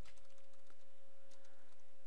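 Soft computer keyboard typing, a few scattered key clicks, over a steady thin high tone and a background hiss.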